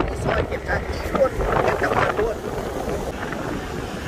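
A man's voice talking, partly buried under a steady rumble of wind on the microphone.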